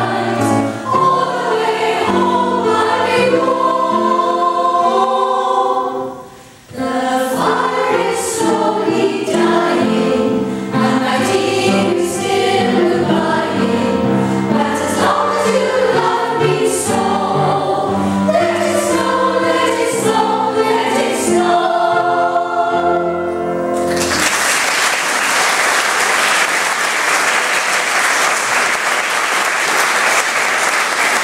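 A ladies' choir singing with piano accompaniment, with a brief break about six seconds in. The song ends about six seconds before the close, and audience applause follows.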